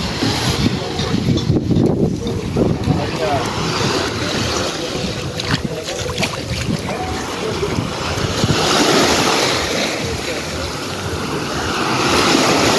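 Small waves washing and breaking on a sandy shore, with wind buffeting the microphone. A broader surge of wash comes about nine seconds in.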